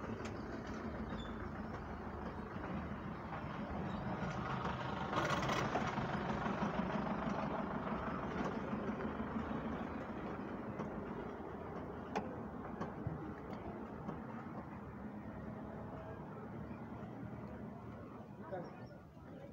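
Motor vehicle engine noise that swells to its loudest about five seconds in and then slowly fades, with a few sharp clicks in the second half.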